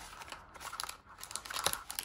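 A sealed trading-card pack being worked carefully out of its cardboard hobby box: crinkling and rustling of wrapper and cardboard, with a few sharp little clicks.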